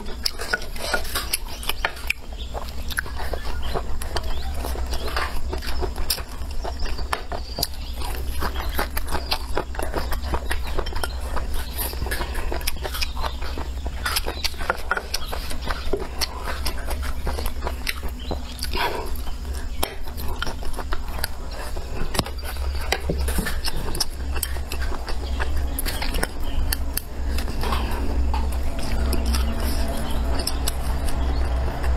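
Chopsticks clicking against bowls and dishes, with chewing, many short irregular clicks throughout; a low steady hum underneath.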